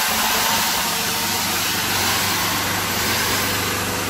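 Tiger 2500-watt petrol generator's engine running steadily under the load of electric drills.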